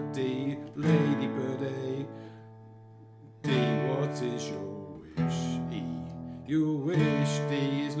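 Acoustic guitar strumming open chords in standard tuning: four strokes, each left to ring and die away, with a quieter stretch around the third second.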